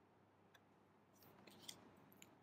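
Near silence, with a few faint clicks and rustles of stiff paper picture cards being handled, mostly in the second half.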